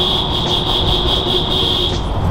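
A vehicle horn held down in one long steady blast inside a road tunnel, over the van's engine and road noise; the horn stops at the very end.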